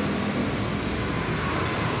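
Steady motor-vehicle noise: an even, unbroken hiss and rumble with no distinct knocks or changes.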